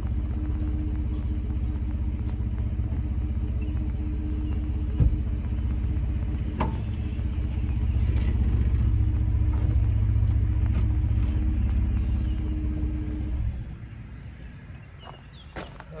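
Ford F-150 pickup's engine idling steadily, with one sharp knock about five seconds in; the engine note rises slightly for several seconds as the truck is eased forward a hair to seat the trailer hitch, then the engine is switched off and cuts out abruptly a couple of seconds before the end.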